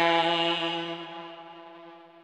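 The final sustained synthesizer chord of a song, held at a steady pitch and fading out gradually.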